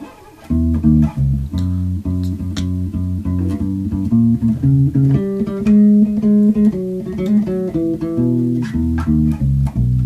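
Electric bass guitar playing a run of single notes that begins about half a second in. It is a diminished-scale passage over the flat-six chord of a gospel bass line.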